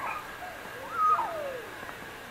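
A single animal call about a second in, rising in pitch, holding briefly, then sliding down.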